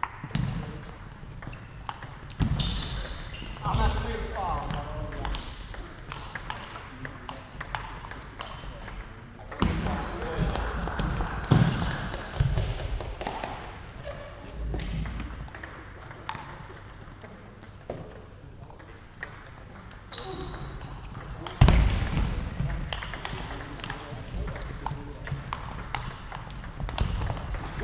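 Table tennis ball being struck with bats and bouncing on the table in rallies, in a short run of sharp clicks, with people's voices and shouts in a reverberant sports hall.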